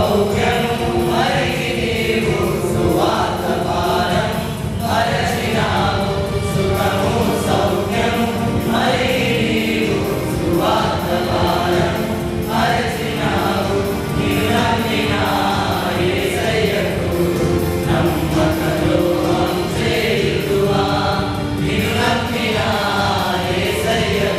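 Male choir singing a Telugu Christian song together, with continuous musical backing underneath.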